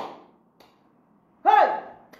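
A woman's single loud exclamation, "Hey!", falling in pitch, about one and a half seconds in after a short silence.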